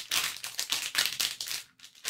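A foil blind bag crinkling in the hands as it is handled, in a quick, irregular run of crackles that dies away near the end.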